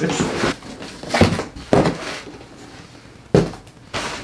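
Cardboard boxes being lifted out of a large shipping box and set down on a wooden table: rustling and scraping of cardboard with a few knocks, the sharpest a little over three seconds in.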